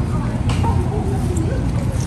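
Outdoor ambience: faint murmur of people's voices over a steady low rumble.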